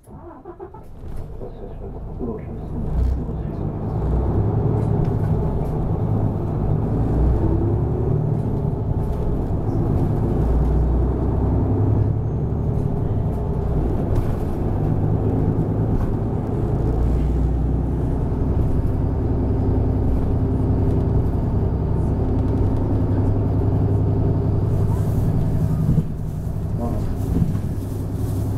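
City bus engine and road noise heard from inside the cabin as the bus pulls away and gathers speed over the first few seconds, then drives on steadily.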